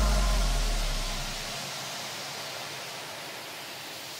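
A white-noise wash, the kind used as a transition effect between tracks in an electronic dance mix. The deep bass of the previous track dies away in the first second and a half, leaving a steady hiss that slowly fades.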